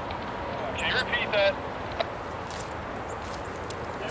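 Freight cars rolling across a steel girder bridge: a steady rolling noise with a few sharp clicks in the second half.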